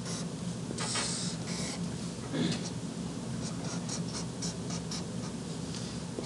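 A felt-tip marker drawing straight lines on paper: a run of short strokes, the strongest about a second in.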